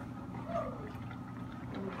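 Quiet wet sounds of tomato sauce and browned sausage being stirred with a spoon in a stainless steel pot.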